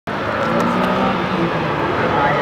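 A racing car's engine running steadily, its pitch shifting a little: the BMW M3 on its slalom run.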